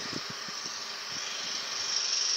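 Steady rushing noise of distant road vehicles, slowly growing louder toward the end, with a few faint low knocks in the first second.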